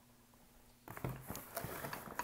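Handling noise: after a short hush, light knocks and rustling start about a second in as objects are moved about.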